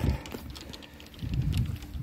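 Low, uneven rumble of a handheld phone microphone being jostled while walking, with faint footsteps.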